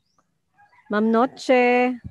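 A woman's voice calling "Ma'am", the last call held long at a steady pitch.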